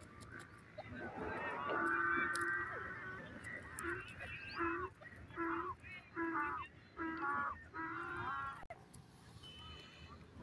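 Grey francolin calling: one drawn-out harsh call, then a run of about six short, thick-voiced notes under a second apart.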